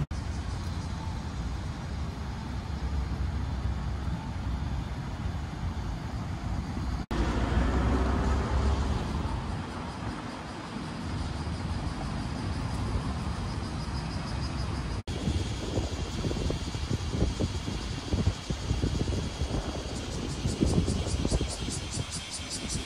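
Steady city traffic: vehicles running on the road and the elevated expressway, with one passing vehicle swelling louder about a third of the way in. The sound breaks off sharply twice.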